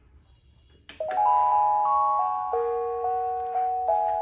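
Seiko Symphony melody wall clock starting its tune about a second in, right after a click: a bell-like melody played in chords, each note ringing and slowly fading as the next comes in.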